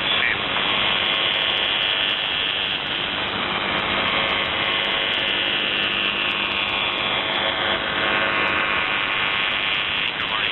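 Buzz tone of UVB-76, 'The Buzzer', the Russian military shortwave station on 4625 kHz, received over a shortwave radio: a steady buzz with radio hiss.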